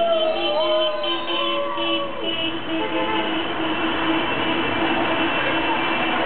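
Horns blaring in long, steady, overlapping blasts while people shout and whoop in the first couple of seconds, over the noise of a crowd and traffic: street celebration honking.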